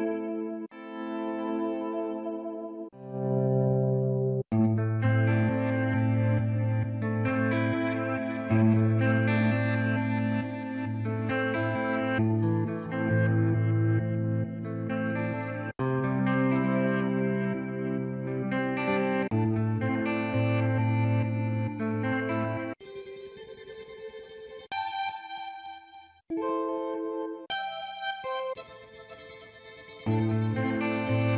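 Sampled cinematic guitar from the Big Fish Audio Impulse library playing back: layered ambient guitar chords with a steady low note underneath, each phrase cutting off abruptly and changing every several seconds. In the last quarter it thins to quieter, sparser high picked notes.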